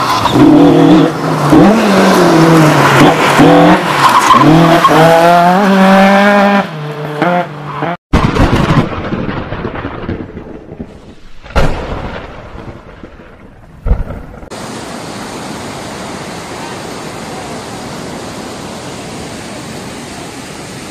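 A loud pitched sound that wavers up and down for about eight seconds, then cuts off. After a couple of thumps, a steady rush of floodwater fills the last five seconds.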